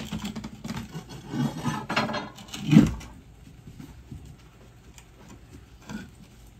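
Wooden pallet loaded with cabinet boxes being levered up off a concrete floor with a steel pry bar: creaks, scrapes and knocks over the first half, the loudest a knock about three seconds in.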